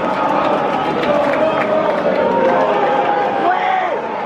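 Football crowd in a stadium stand: many fans' voices shouting and calling out at once, a steady loud din.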